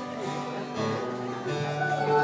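Live folk band playing the instrumental opening of a song, led by a strummed acoustic guitar with sustained notes; the music swells louder about one and a half seconds in.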